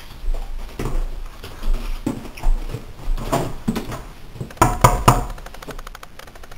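Footsteps climbing wooden stairs, irregular thuds. About five seconds in come three loud knocks on a door in quick succession.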